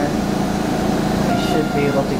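Indistinct voices over a steady low mechanical hum.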